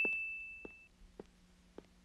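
A single bright electronic ding, the sin-counter chime, fading away over the first second. Then faint, evenly spaced footsteps on a hard floor, about one step every half second, from a man walking down a corridor in the film's Foley track.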